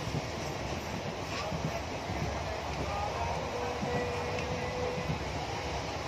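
Steady rumble and rattle of a passenger train carriage running on the rails, heard from inside the compartment, with small knocks throughout and a faint held tone about four seconds in.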